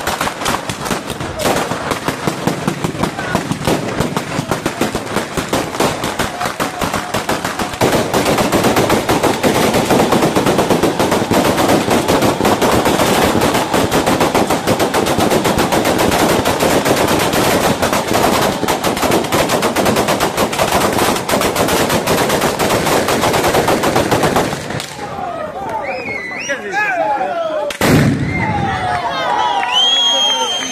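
Batteria alla bolognese ground firework: a long chain of firecrackers going off in a dense, rapid crackle like machine-gun fire. It grows louder about eight seconds in and then stops abruptly a few seconds before the end.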